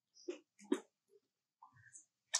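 Macaques making a few short sounds: a brief one about a third of a second in, a louder one just before the middle, and a softer one near the end.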